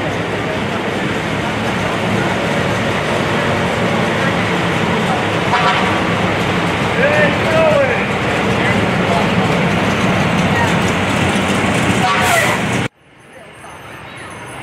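Fire engines rolling slowly past with their engines running, mixed with the voices of onlookers. The sound cuts off suddenly about a second before the end.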